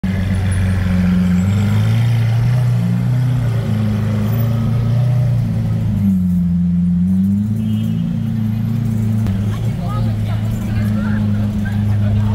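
Lamborghini Aventador's V12 running at low revs in slow traffic: a deep, steady drone whose pitch shifts slightly a few times. Street voices are faintly audible near the end.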